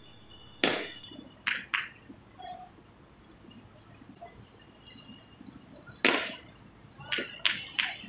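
Several sharp cracks or claps in two clusters: one about half a second in, with a short tail, and a quick pair a second later; then another about six seconds in, with a longer tail, followed by three more in quick succession.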